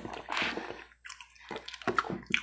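Wet chewing and mouth sounds picked up close by a lapel microphone: a string of short, soft squishes and clicks with brief gaps between them.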